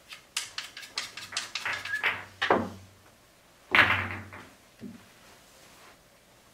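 Pool balls clicking and knocking as they are handled and set out on the table: a quick run of light clicks over the first two seconds, then two heavier knocks, the louder one about four seconds in.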